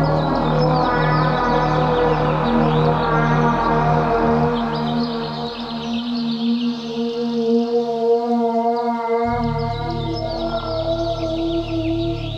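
Ambient synthesizer music: sustained chords with short high gliding chirps above them. A pulsing low bass fades out about four seconds in and comes back about nine seconds in.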